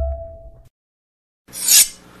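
Logo sting sound effects: a held electronic tone over a deep hum dies away within the first second. After a short silence, a brief whoosh comes near the end.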